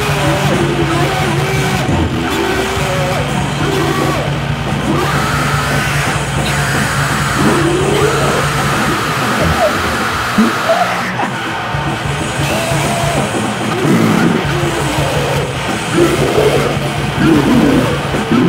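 Harsh noisecore/gorenoise recording: a dense, distorted wall of noise over a steady low drone, with bending, shifting vocal-like sounds.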